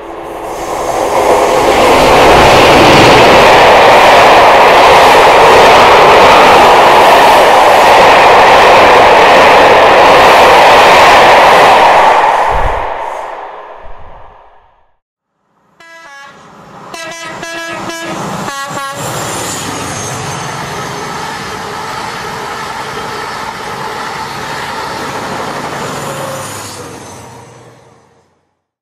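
Diesel locomotive passing close by at speed, engine and wheel noise very loud, building over the first two seconds and dying away after about twelve. After a short silence, a separate, quieter train recording starts with a quick run of clicks and short tones, then runs steadily.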